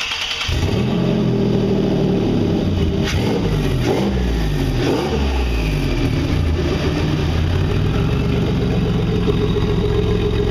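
Turbocharged Nissan VQ35HR 3.5-litre V6 cranking and catching within about half a second on its first start after the swap. Engine speed rises and falls a few times over the next few seconds, then settles into a steady, smooth idle.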